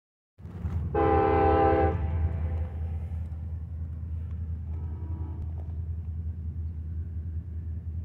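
Distant diesel freight locomotive air horn: one loud blast of about a second, then a shorter, fainter blast a few seconds later, over a steady low rumble.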